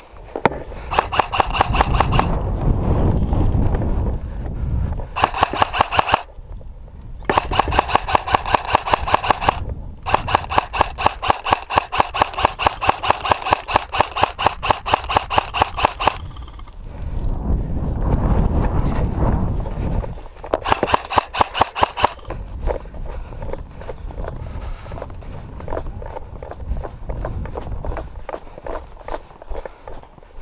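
Airsoft electric rifle firing full-auto in five bursts of rapid, evenly spaced shots, the longest running about six seconds near the middle, with the whine of the gearbox over the shots. Between bursts there is a low rumble of movement.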